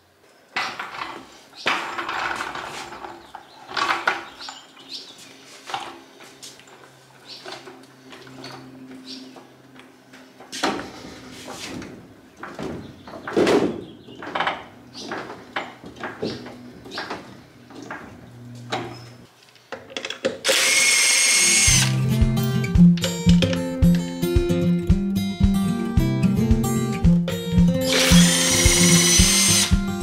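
Workshop clanks and knocks, then about twenty seconds in an impact wrench runs in a loud burst on the trailer wheel's lug nuts. Acoustic guitar music with a steady beat then begins, and a second impact wrench burst comes near the end.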